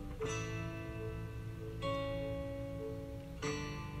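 Background music: a slow, gentle plucked-string melody, with a new note or chord struck about every one and a half seconds and left to ring.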